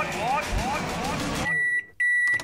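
A quick run of rising sweeping tones, then a microwave oven's timer beeping as its countdown reaches zero: one steady high beep starting about one and a half seconds in.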